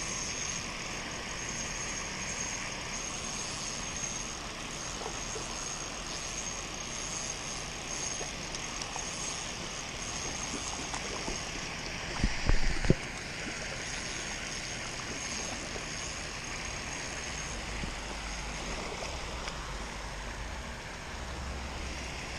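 Steady splashing hiss of pond fountain aerators spraying water, with a couple of knocks about halfway through.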